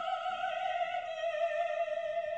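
A woman's operatic voice holding one long high note with vibrato, with little else beneath it.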